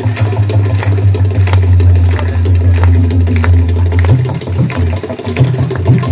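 Loud aarti ritual percussion: a continuous deep drum roll with many sharp clanging strikes over it, the roll breaking up into separate beats about four seconds in.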